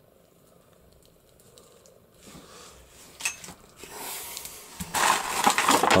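Thin clear plastic bag crinkling as it is picked up and handled, starting faintly about four seconds in and growing loud near the end, after a quiet stretch with a light click or two.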